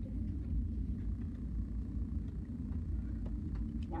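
Steady low rumble of room background noise, with a few faint light ticks.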